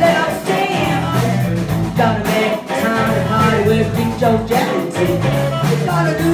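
A live band playing: a woman singing into a microphone over electric guitar, bass guitar and a drum kit.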